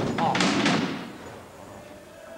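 Wooden folding chairs knocking twice on a wooden floor within the first second, alongside a brief fragment of voice, in a large hall.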